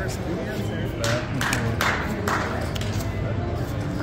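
Casino chips clacking and playing cards being handled at a blackjack table, a few sharp clicks about a second or two in, over a steady background din of casino chatter and music.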